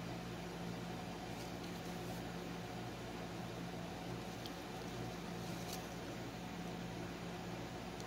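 Steady low room hum, with a few faint ticks as a needle and floss are pulled through stamped cross-stitch fabric.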